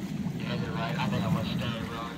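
Faint, indistinct voices talking over a steady low rumble.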